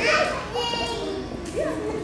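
Indistinct voices of people talking in a large room, with one high-pitched voice standing out about half a second in.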